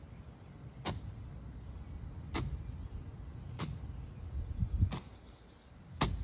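A leafy tree branch loaded with paint swished and slapped against a stretched canvas four times, about once every second and a quarter, over a steady low rumble.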